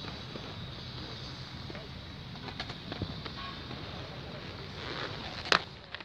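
Steady outdoor background noise, then a single sharp clack near the end as an inline skate lands on a concrete ledge to start a grind.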